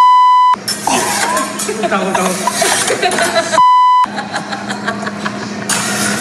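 Censor bleep: a steady, high, flat beep about half a second long that completely replaces the audio, heard twice, at the start and again about three and a half seconds later, over people talking.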